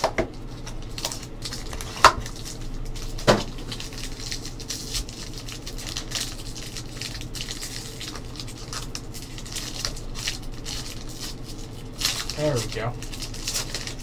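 Plastic wrap and a foil trading-card pack being torn open and handled: continual crinkling and crackling, with a few sharp clicks in the first few seconds. The pack is stubborn to open. A short voice sound comes near the end.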